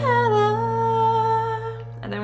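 A voice holding one long sung note that dips in pitch at the start and then holds steady, fading near the end, over a sustained piano chord.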